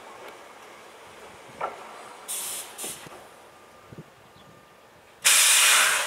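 Choshi Electric Railway car 2001 standing at the platform, venting compressed air: two short hisses, then a longer, louder hiss near the end that fades away.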